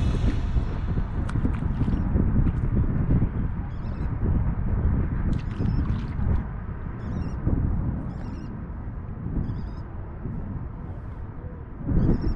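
Wind buffeting the microphone: a steady low rumble, easing slightly toward the end. Faint short high chirps come and go several times over it.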